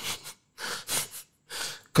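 A person's short breathy sounds, a handful of quick puffs of breath with brief silences between them.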